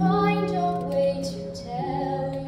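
A woman singing long held notes over sustained accompaniment, a song from a stage musical performance.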